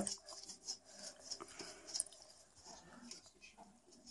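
Faint, irregular rustling and crinkling of PTFE tape as it is unwound from a small plastic spool and wrapped by hand around a thin silk-covered copper wire.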